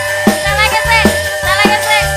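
Live band playing an instrumental passage: electric guitar and keyboard over barrel hand drums keeping a steady beat, in the style of a Javanese dangdut group.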